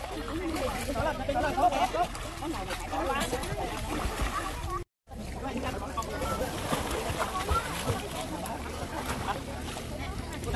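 Children's voices and water splashing in a swimming pool. The sound cuts out briefly about five seconds in.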